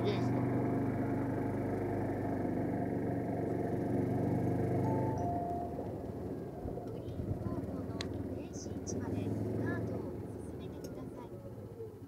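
A steady engine hum, strongest for the first five seconds and then fading, with a single sharp click about eight seconds in.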